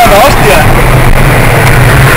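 Car engine running steadily while driving, under loud rushing wind and road noise that overloads the microphone. A short bit of voice is heard near the start.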